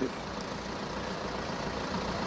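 Steady outdoor street background noise: an even, low rumble with no distinct events.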